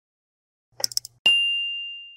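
Subscribe-button animation sound effect: a few quick clicks, then a single bright bell ding that rings out and fades.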